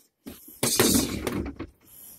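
Boxing gloves hitting a freestanding punching dummy on a weighted base: a flurry of hits starts about half a second in and lasts about a second.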